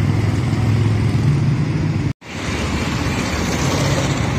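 Road traffic: vehicles passing close, a low engine hum and tyre noise that is strongest in the first two seconds. The sound drops out abruptly for a moment about two seconds in, then the traffic noise picks up again.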